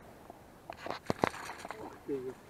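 Rustling and a few short, sharp clicks about a second in, from handling close to the microphone while reaching through tall grass.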